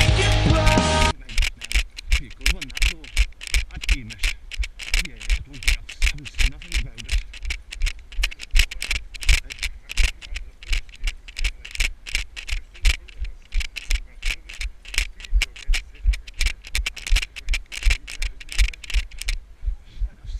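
Rock music stops about a second in. It gives way to a runner's footfalls on a dirt trail, a steady run of sharp knocks at about three strides a second.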